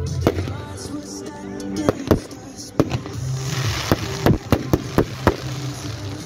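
Aerial fireworks bursting overhead: a string of sharp bangs, about ten in six seconds, coming thick and fast in the second half, with a short crackling hiss about three seconds in.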